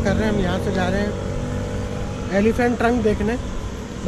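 A man talking in two short stretches, over a steady low rumble of road traffic.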